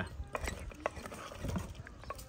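Long metal ladle stirring thick mutton curry in a clay handi pot, with a few light scrapes and knocks of metal against the pot.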